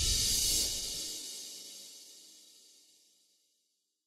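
The end of a logo intro's music: a bright, hissy final hit swells in the first half-second, then rings out and fades away to silence about three seconds in.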